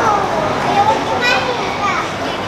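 Background chatter of several people's voices over steady crowd noise, with a high-pitched voice rising above it a little over a second in.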